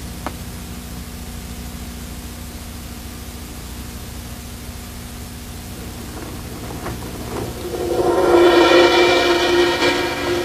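A steady low hum with a few faint ticks. About eight seconds in, background music fades in with several held notes and grows louder.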